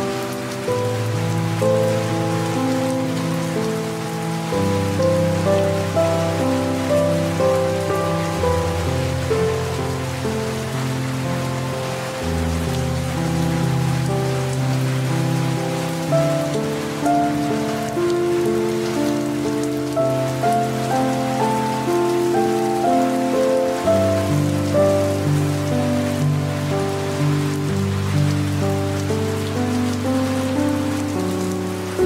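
Soft, slow piano music, its low notes changing about every four seconds, over a steady patter of light rain.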